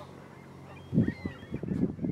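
Geese honking several times in quick succession, starting about halfway in, over a faint steady low hum.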